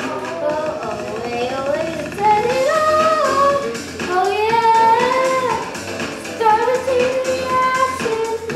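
A girl singing a melody into a handheld microphone, her voice gliding between held notes, over backing music with a steady bass line.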